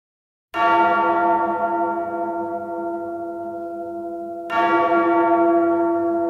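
A bell tolling twice, about four seconds apart. The first stroke comes half a second in, and each one rings on and slowly fades.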